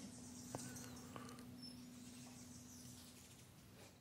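Near silence: faint room tone with a low steady hum, and two faint ticks about half a second and a second in.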